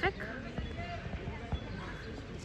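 A football being kicked: a dull thud right at the start and another kick about a second and a half in.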